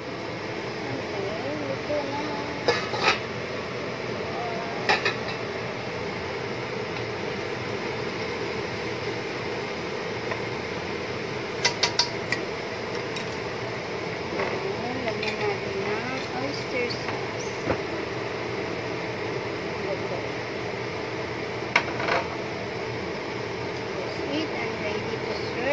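Cooking utensils and a pan lid clinking against a wok as vegetables are stir-fried: a few sharp knocks, including three quick ones together about halfway through, over a steady rushing noise.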